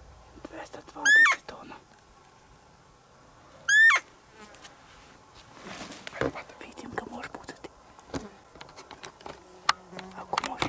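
Two short, high-pitched roe-deer 'fiep' calls from a game caller, about two and a half seconds apart, sounded to lure a rutting roebuck. Faint scattered clicks and rustles follow.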